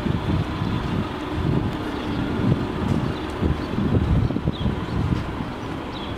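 Wind buffeting the microphone, coming in irregular low gusts.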